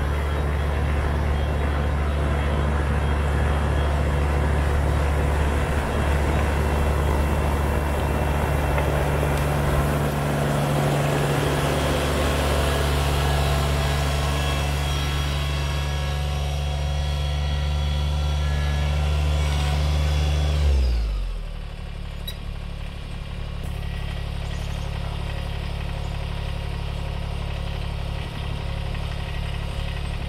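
Kubota BX25D compact tractor's three-cylinder diesel running at working speed, driving a front-mount snowblower that throws snow. About two-thirds of the way through, the engine revs fall away and the blower noise stops, then it carries on idling steadily.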